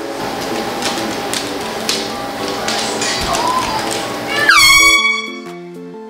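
Handheld compressed-gas air horn sounding one loud, shrill blast of about half a second near the end, its pitch dropping sharply as it starts. Background music plays under and after it.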